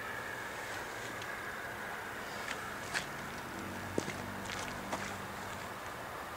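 Steady noise of a passenger train pulling away over snowy track. A few sharp clicks come in the middle, the loudest about four seconds in, and a faint low hum is heard near the end.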